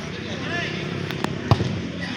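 A soccer ball being kicked: two sharp thumps about a quarter second apart, the second louder, over faint voices of players.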